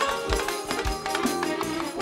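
Live folk-style band of keyboard, bass guitar and drums playing an instrumental passage between sung lines, with drum beats about every half second under held notes.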